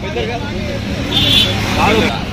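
Speech over road traffic, with the traffic louder in the second half as a motorbike passes.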